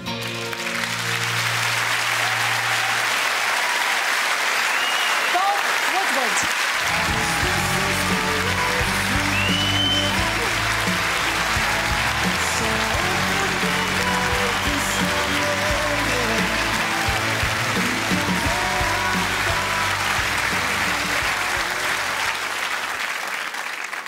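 A large audience applauding loudly and without a break, a standing ovation, while band music plays underneath; the music fills out with bass about seven seconds in.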